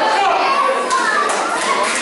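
Overlapping chatter of spectators, many of them children, echoing in a large hall, with a sharp click about a second in and a few lighter taps after it.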